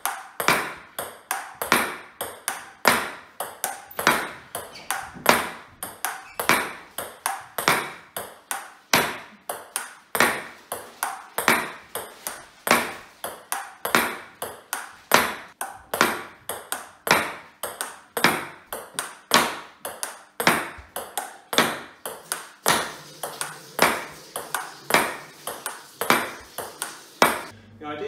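Table tennis rally against a thin MDF rebound board: the ball clicks off the bat, the table and the board in a quick, steady run of several hits a second. The hits stop just before the end.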